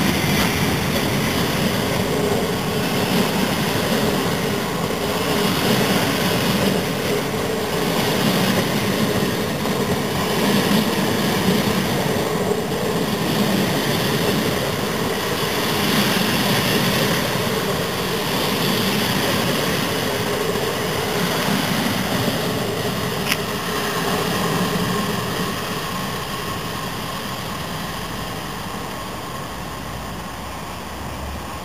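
Passenger coaches of a locomotive-hauled train rolling past at low speed. The wheels rumble on the rails and swell each time a coach's bogies go by, every two to three seconds, and the sound fades away over the last few seconds.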